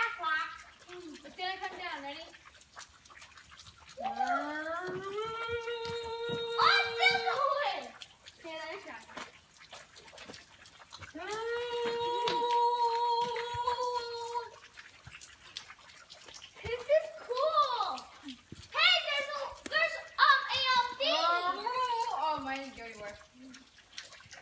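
A high voice holding two long steady notes of about three seconds each, the first sliding up into its pitch, followed by a stretch of broken, excited talk.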